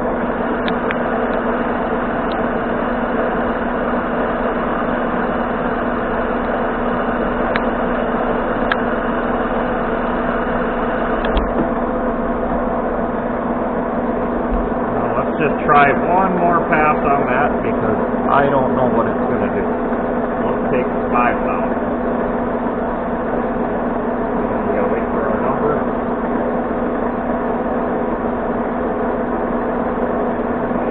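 Monarch manual lathe running steadily under power during a fine 92-pitch single-point threading pass: a steady machine hum with several steady tones and a few light clicks.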